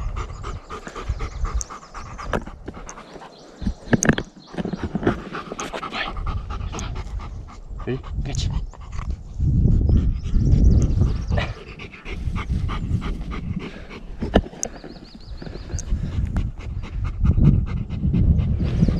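Golden retriever panting after a steep climb, tired out. A low rumble on the microphone swells louder about ten seconds in.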